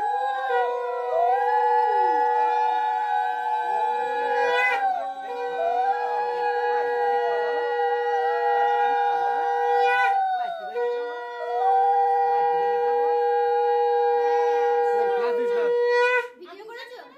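A conch shell (shankha) blown in three long, steady blasts of about five seconds each, with several women's ululation (ulu) rising and falling over it: the auspicious sounds of a Bengali rice-feeding ceremony.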